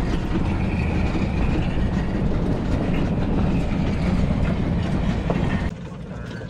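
Loud, steady rumble of an open tour vehicle in motion, with a faint high squeal in the first couple of seconds. It cuts to something much quieter just before the end.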